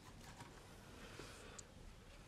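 Near silence with a few faint light clicks and a soft, brief scrape as a round metal cake pan is lifted off a baked cake on a wire cooling rack, ending with one small sharp click.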